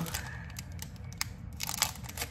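Plastic and card packaging of a makeup brush being handled, with crinkling and small sharp clicks; the sharpest click comes near the end.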